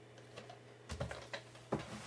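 Faint clicks and taps of a plastic DVD case being handled and put down and a slipcased Blu-ray picked up, with a few sharp clicks in the second half.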